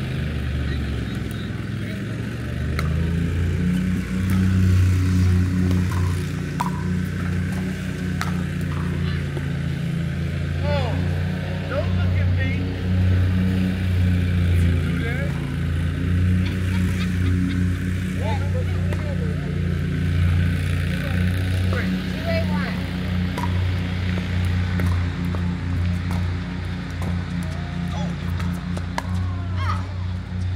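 Pickleball paddles hitting a plastic ball in a rally, sharp pops at irregular intervals, over a loud steady low hum, with brief voices now and then.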